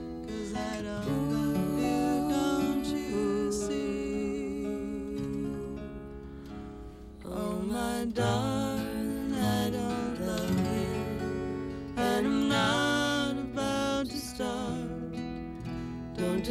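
Live acoustic folk song: an acoustic guitar being strummed and picked under a woman's singing voice, the sound easing off briefly a little before the middle and then coming back fuller.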